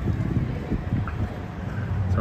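Wind buffeting the phone's microphone: a low, uneven rumble.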